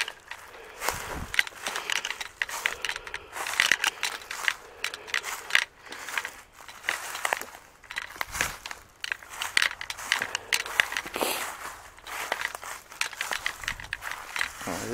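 Footsteps crunching through dry fallen leaves and twigs, an irregular run of crackling steps.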